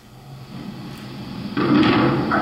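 Soundtrack of a horse-training video played over room loudspeakers: a rumbling noise that builds and then jumps sharply louder about one and a half seconds in.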